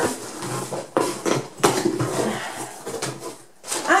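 A cardboard parcel being opened with scissors: the blades cutting through the packing tape and the flaps pulled open, an irregular run of clicks, scrapes and rustles.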